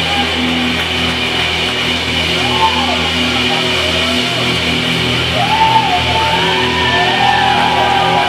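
Indie rock band playing live, a slow opening with held guitar and bass tones. Gliding notes that rise and fall come in from about two and a half seconds in.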